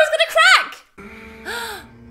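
A woman's high-pitched giggling laugh, a run of rising-and-falling notes that stops less than a second in. After a brief gap the quieter episode soundtrack comes back in, a low held music tone with one short voice sound.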